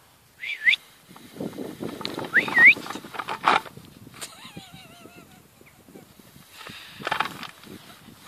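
A wire-haired dachshund whining: short high cries that hook upward near the start and again about two and a half seconds in, then a longer wavering whine around the middle. Rustling and a sharp knock from the lead and grass come in between.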